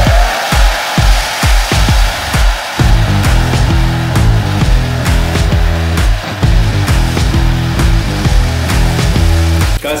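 Handheld hair dryer blowing steadily as it dries a wet watercolour-pencil wash on paper. Background music with a heavy regular beat plays under it, and a deeper bass line comes in about three seconds in.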